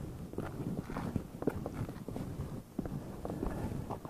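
Footsteps of a hiker walking over gritty granite rock and sand, about two steps a second.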